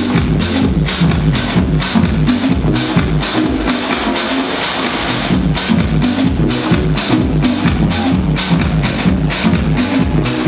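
Electronic house music through a festival sound system, with a four-on-the-floor kick drum at about two beats a second and a pulsing bass line. Around the middle the bass drops out for a couple of seconds under a rising hiss, then comes back in.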